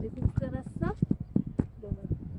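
A person's voice speaking briefly, then a quick run of about five sharp clicks.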